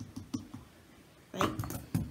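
Scissors clicking and snipping against a small plastic air-freshener refill as its cap is pried off: a few light clicks early, then a louder run of sharp clicks near the end.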